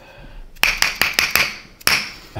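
Small metal mallet striking a steel chiropractic adjusting instrument held against a man's back: a quick run of about seven sharp, ringing metallic taps in about a second, then one more tap near the end.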